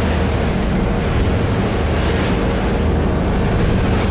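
Motor yacht underway at cruising speed: steady drone of its engines under a rush of wind and water past the hull.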